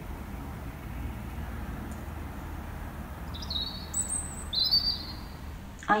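Outdoor garden ambience: a steady low rumble with two short bird calls, each about half a second long, the first about three and a half seconds in and the second a second later.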